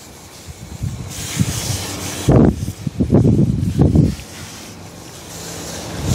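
Handheld pump-up garden sprayer hissing as it sprays diluted neem oil onto squash plants. A louder rustling stretch from about two to four seconds in, as the sprayer and glove brush through the large leaves.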